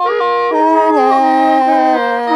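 Lahu naw, a gourd mouth organ, playing dance music: several reedy notes held together that step from pitch to pitch, with a short slide at the start.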